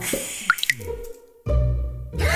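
Cartoon water-drip sound effect: two quick rising plinks about half a second in, over a falling musical slide. The music drops almost to silence, then comes back loudly about a second and a half in.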